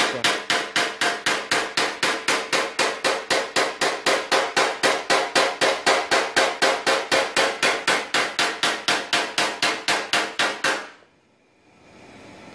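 Light, even hammer taps, about four a second, through a metal tip on the steel of a car fender, knocking down a crease ridge in paintless dent repair so the dent beside it relaxes. The tapping stops about a second before the end.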